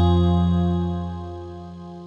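Electric guitar chord ringing out and slowly fading.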